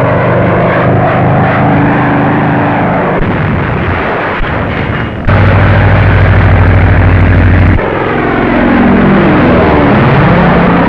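Propeller-driven biplane engine droning steadily in flight, old film soundtrack. The drone cuts abruptly louder about five seconds in and drops back about two and a half seconds later, then sweeps in pitch near the end as a plane passes.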